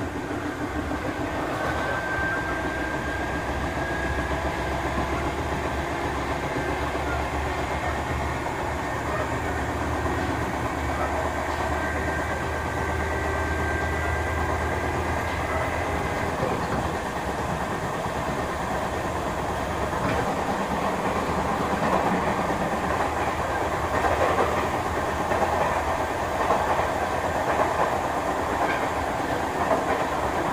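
Sotetsu 7000 series electric train running on the rails: a steady rumble with wheel clatter. A thin high whine runs over the first half and fades out around the middle. The rumble then grows rougher toward the end.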